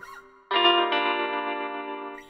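Guitar phrase of a trap instrumental at 132 bpm: a ringing guitar chord comes in suddenly about half a second in, moves to a new chord just before the one-second mark, and slowly fades, with no drums or bass under it.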